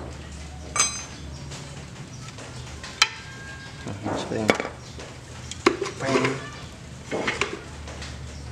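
A few sharp metallic clinks of loose steel motorcycle parts and tools being handled, two of them ringing briefly, about one second and three seconds in, with another near the end.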